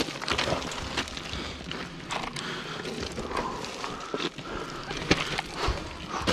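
Footsteps on loose, flat scree rock: irregular crunches and clinks of stones shifting and knocking together underfoot.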